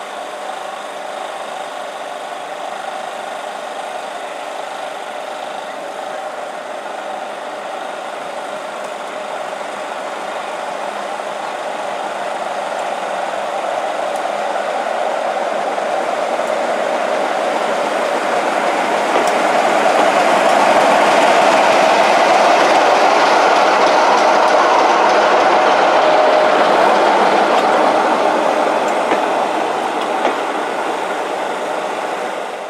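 BR Class 45 'Peak' diesel locomotive D123, its Sulzer engine running with a steady hum as it approaches hauling a train of coaches. It grows louder as it draws near and passes, loudest in the last third, then eases off as the coaches roll by.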